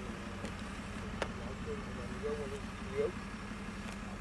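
Recovery truck's diesel engine running steadily while it works its crane hoisting a car, with voices talking in the background. A single sharp click sounds about a second in.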